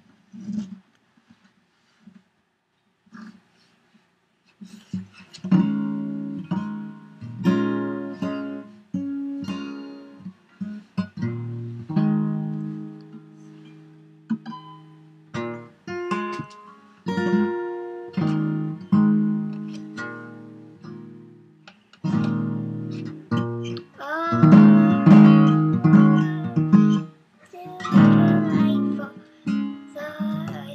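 A child strumming a steel-string acoustic guitar, repeated chords each left to ring and fade, starting about five seconds in. Near the end a child's voice sings along over the strums.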